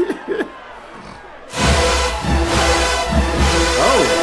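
A man laughs briefly. About one and a half seconds in, a large marching band's brass section, with sousaphones and trombones, comes in suddenly and plays loudly with a heavy low-brass bass.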